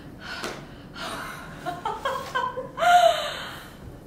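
Young women's voices: breathy gasps and short vocal exclamations, building to a loud, drawn-out vocal cry at about three seconds.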